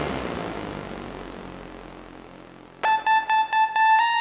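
Electronic techno music: a noisy swell fades away, then nearly three seconds in a high synth note cuts in, chopped into a fast, even pulse of about four to five beats a second.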